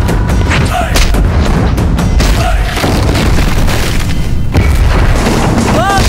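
Film fight-scene sound effects: a run of booming impacts and hits over loud action score music.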